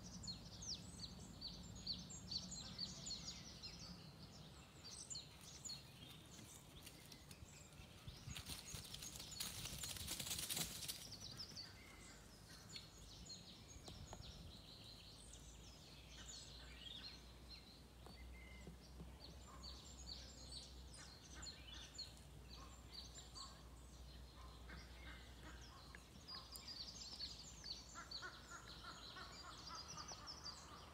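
Faint chirping and song of small birds, many short high calls scattered throughout. A brief rush of noise about nine to eleven seconds in is the loudest thing.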